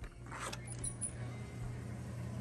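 A door being opened: a short rattle of its latch and hardware about half a second in, then a softer one, over quiet background music.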